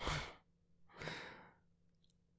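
A man's breaths close to the microphone: a quick, sharp breath at the start, then a longer breath out like a sigh that swells and fades.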